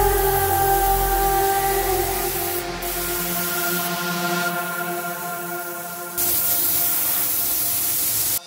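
Background music of sustained synth tones over the hiss of a compressed-air gravity-feed spray gun spraying paint onto a car body. The hiss fades about four seconds in and comes back strongly about six seconds in.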